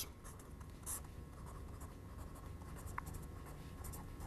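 Faint sound of handwriting, a pen or marker stroking the writing surface, with a brief squeak about three seconds in.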